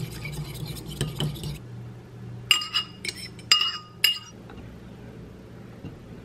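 A metal fork whisking raw eggs in a ceramic bowl: quick scratchy ticking for the first second or so, then several sharp ringing clinks of the fork against the bowl between about two and a half and four seconds in.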